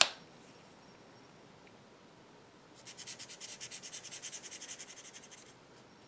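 Chameleon alcohol marker scribbled back and forth on paper, colouring in a swatch: a quick run of short strokes, about ten a second, starting about three seconds in and lasting some two and a half seconds.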